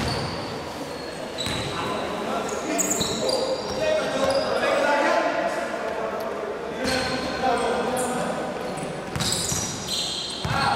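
Sounds of a basketball game in a large echoing gym: the ball bouncing on the hardwood court, short high-pitched sneaker squeaks (about three seconds in and again near the end), and players' voices calling out.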